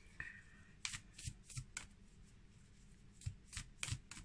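A deck of oracle cards shuffled by hand: quiet, irregular soft clicks and slaps of cards against each other.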